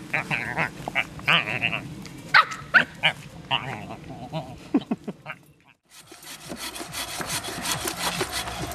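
A string of short yelping, bleating animal-like calls from a person on all fours imitating an animal. After a brief gap about three-quarters of the way through, a hand bow saw rasps back and forth through a birch log.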